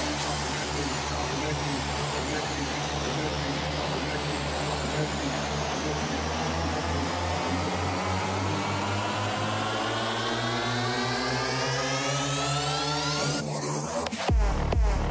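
Electronic dance music breakdown: a long sweeping effect whose pitch glides down through the first half and climbs back up toward the end, cutting off sharply near the end, over a steady low bass pulse.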